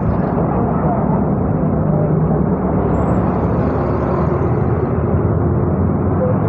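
Steady low rumble of roadside traffic and running vehicle engines, with faint voices underneath.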